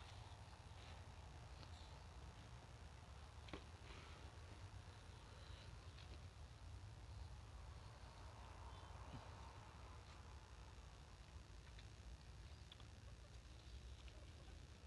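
Near silence: a faint steady low hum of background noise, with a few faint clicks, the clearest about three and a half seconds in.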